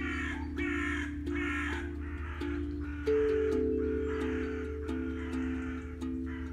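Crows cawing repeatedly in harsh calls, the first three short and quick and the later ones longer. Under them an aquadrum rings out sustained notes, with a louder, higher note struck about three seconds in, over a low steady hum.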